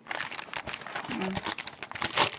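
Brown paper bag being crumpled and unfolded by hand: an irregular run of crinkles and crackles as the paper is pulled open.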